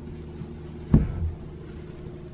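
A single dull thump about a second in as a dinette seat cushion is pushed into place, over a steady low hum.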